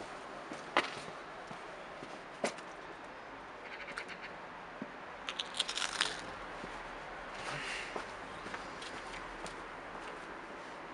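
Quiet outdoor background with sparse light clicks and scuffs, and a short run of crackly clicks about five to six seconds in.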